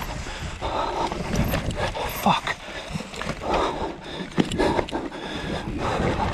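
Mountain bike descending a rooty dirt forest trail: tyres running over dirt and roots with frequent knocks and rattles from the bike, over a steady rumble of wind on the camera microphone. Bursts of the rider's hard breathing come every second or so.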